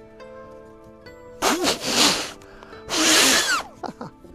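Two hard puffs of breath blown into the opening of a folded paper origami balloon (a water bomb that becomes a box) to inflate it, one about a second and a half in and another about three seconds in. The paper is hard to get to blow up at first.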